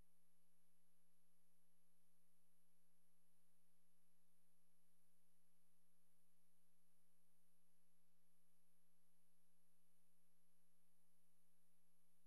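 Near silence with a faint, perfectly steady electronic hum of a few pure tones, the low one strongest.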